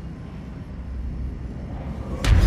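Steady low rumble of a spaceship interior's ambient hum in a film soundtrack, swelling slightly near the end.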